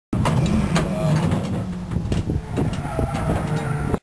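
A car engine idling, a steady low rumble with scattered light clicks and rattles.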